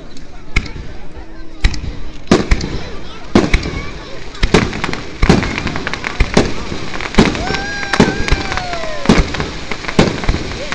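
Aerial firework shells bursting overhead in quick succession, a sharp bang every half second or so.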